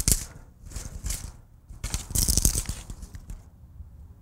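Long-handled loppers cutting through dead, frost-killed Jerusalem artichoke canes: a crunching snip at the start and another about a second in, then a longer rustle and crackle of the dry stalks around two seconds in.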